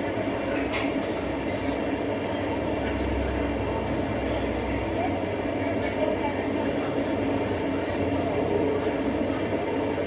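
Steady rumble of an idling heavy vehicle engine, unchanging throughout, as picked up by a vehicle's dashcam.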